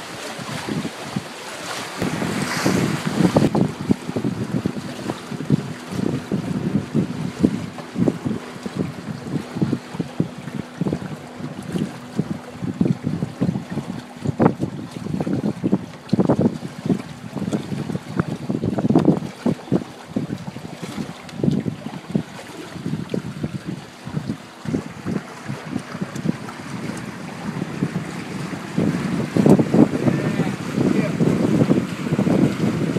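Wind buffeting the microphone in irregular gusts over the rush and splash of water past the hulls of a small multihull sailboat under way at speed.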